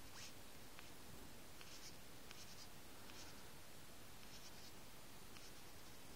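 Fingertip swiping and brushing across a smartphone's glass touchscreen while scrolling a web page: about half a dozen short, faint swishes with a few light ticks between them.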